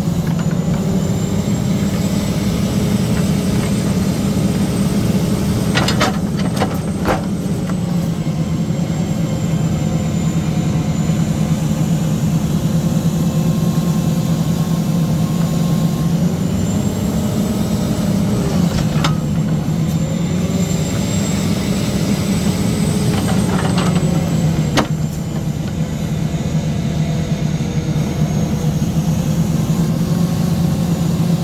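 Diesel engine of an International log truck running steadily while its knuckleboom loader works, with a hydraulic whine that slowly rises and falls as the boom moves. A few sharp knocks of poles landing on the load, a cluster about six to seven seconds in and more later on.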